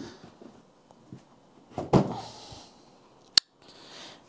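Cardboard packaging being handled: a single thump about two seconds in as the lifted-off box sleeve is set down, a soft rustle of cardboard after it, and a brief sharp click near the end.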